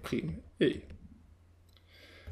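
A man's voice says one short syllable, then a quiet stretch with faint clicks of a stylus writing on a drawing tablet.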